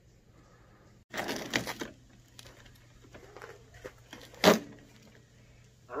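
Handling noise: a brief rustle about a second in, a few faint clicks, then one sharp click about four and a half seconds in.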